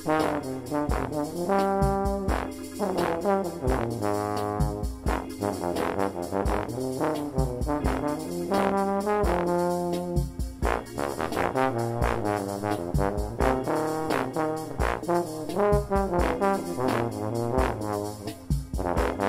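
Cimbasso and bass trombone playing a minor blues line in held and moving low-brass notes. Underneath, a Farfisa organ's automatic accompaniment keeps a steady ticking beat with sustained low chords.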